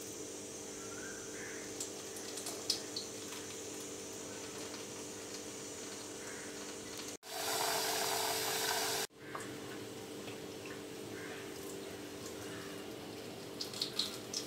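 Kitchen tap water running into a stainless-steel pot of soaked mung beans for about two seconds midway, starting and stopping abruptly. Around it, a steady low hum with a few faint clicks.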